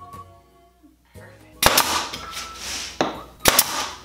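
Two sharp shots from a nail gun, about a second and a half in and again near the end, each followed by a brief rush of noise, tacking finishing nails into a pine board.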